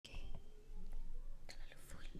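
A woman speaking quietly, close to the microphone, with a few faint clicks.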